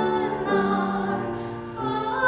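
A classical female voice singing with grand piano accompaniment, held notes changing about every half second, growing a little softer and then swelling again near the end.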